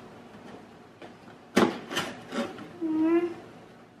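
Cardboard flaps of a pet carrier box being pulled open, with three sharp snaps about halfway through as the flaps come free. Near the end a girl lets out a short drawn-out vocal sound.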